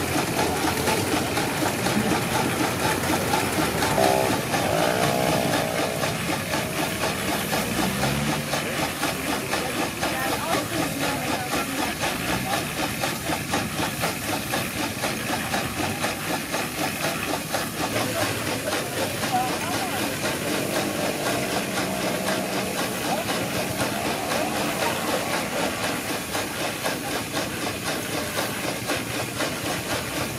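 1907 Hofherr & Schranz portable steam engine running, with a steady hiss of steam and a quick, even rhythm of exhaust puffs from the working engine.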